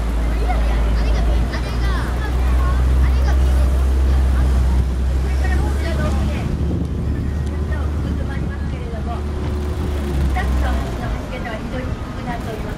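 Canal tour boat's motor running low and steady as the boat manoeuvres alongside the landing pontoon, stopping near the end, with people's voices over it.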